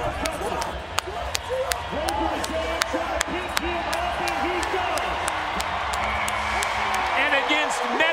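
Arena crowd noise during a bull ride: men near the chute shout short repeated calls, over sharp knocks and clanks throughout. Higher whoops and cheers rise near the end as the ride goes the full eight seconds.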